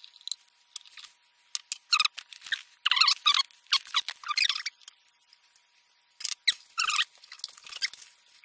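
Screwdriver turning out the wood screws that hold the front of a Dino Baffetti melodeon, giving a series of short, irregular squeaks and scratches with pauses between them.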